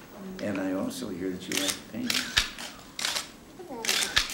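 Press photographers' camera shutters clicking several times in short bursts, the loudest near the end, under quiet talk.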